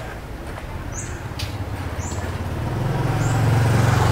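A motor scooter's engine drawing near and passing close, its low hum growing louder through the second half. Over it a bird gives a short high chirp about once a second.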